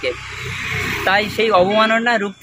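A road vehicle passing close by: a rush of noise that swells over about the first second and carries on under a man's voice.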